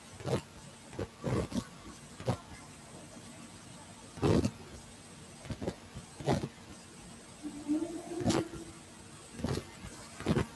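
Irregular faint knocks and clicks, about ten of them spread unevenly, over low background hiss picked up by open microphones on a video call.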